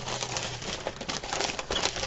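Clear plastic packaging sleeve crinkling in a run of irregular crackles as a fabric garden flag is pulled out of it.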